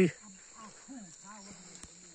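Steady high-pitched drone of insects, with faint talk from people nearby and a single sharp click near the end.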